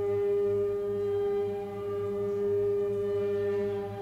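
Drone music: one strong held tone with a ladder of steady overtones above a low hum, all unchanging in pitch, easing slightly in loudness midway.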